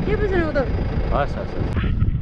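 Voices talking over the steady low rumble of a vehicle driving.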